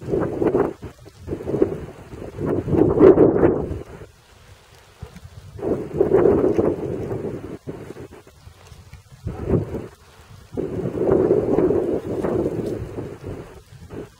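Wind and rain buffeting the microphone in about five loud rumbling gusts, each one to three seconds long, with quieter stretches of rain noise between them.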